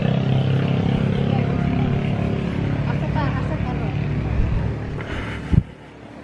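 An engine running steadily with a low hum that slowly fades over the last couple of seconds, with faint voices in the background. One sharp knock about five and a half seconds in.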